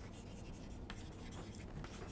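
Chalk faintly scratching and tapping on a blackboard as a line is written.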